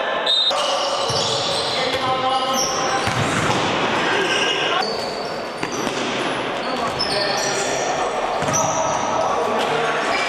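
Futsal game sounds in a large sports hall: many short, high-pitched squeaks of players' shoes on the court floor, thuds of the ball, and players shouting, all echoing in the hall.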